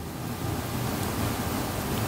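Steady, even hiss of background noise with no clear source, holding level throughout.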